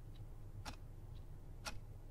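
A clock ticking steadily: one sharp tick each second with a fainter tick between each, over a low steady hum.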